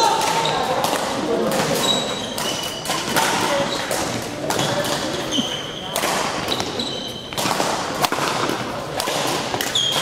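Badminton singles rally on a sports-hall floor: court shoes squeaking in short high chirps as the players lunge and turn, footfalls thudding, and sharp racquet strikes on the shuttlecock, over a hall full of voices.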